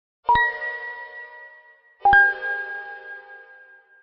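Two bell-like chime strikes about two seconds apart, each ringing on and slowly fading. The second strike is lower in pitch. This is the sound effect of a logo sting.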